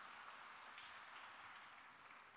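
Faint audience applause, an even patter of clapping that fades out.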